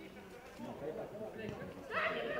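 Indistinct voices of players and people around a football pitch calling out, faint at first and louder near the end.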